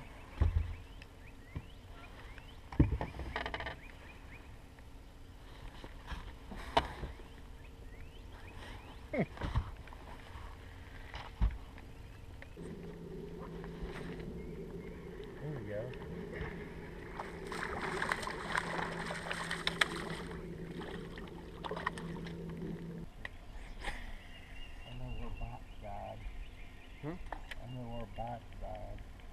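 Scattered sharp knocks and bumps on a fishing boat, then a steady motor hum that starts abruptly about twelve seconds in and cuts off about ten seconds later.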